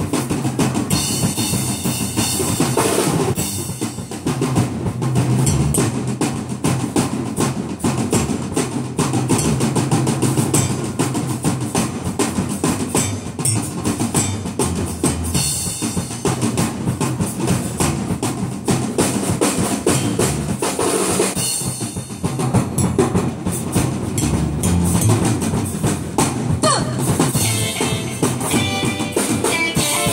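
Fast, dense drumming with bass drum and snare, the martial percussion that accompanies a Taiwanese opera fight scene. Brief high ringing tones cut through it a few times, and a pitched melody comes in near the end.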